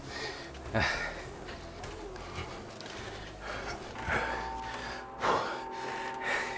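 A man laughing briefly about a second in, then breathing hard and gasping: he is out of breath after running on a treadmill. A faint steady tone comes in about four seconds in.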